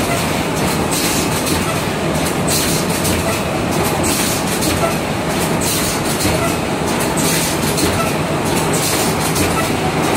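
Full automatic rigid box wrapping machine running: a steady mechanical clatter, with a short hiss about once a second as it cycles.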